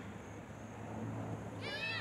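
High-pitched shouting voices, from spectators or young players, begin about a second and a half in as a shot goes toward goal. Underneath is a low steady hum.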